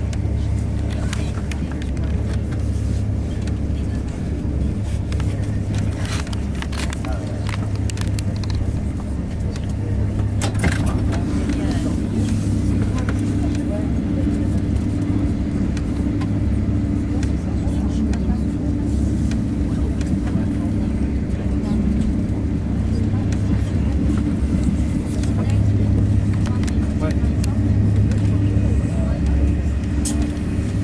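Steady rumble and rolling noise of a Thalys TGV high-speed train heard inside the passenger cabin while running at speed, with scattered light clicks.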